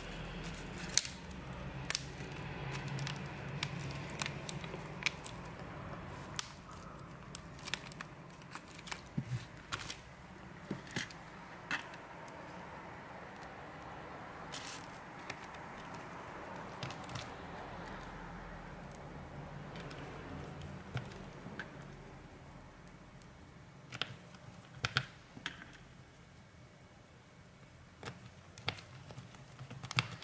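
Scattered light clicks and taps of a smartphone's plastic back frame being handled and pressed into place by hand, over a faint steady low hum.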